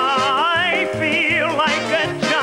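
Male vocalist singing long held notes with wide vibrato over sustained band chords.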